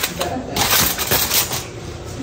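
Aluminium foil crinkling as a hand folds it over a disposable foil pan, a dense crackle that is loudest in the first second and then fades.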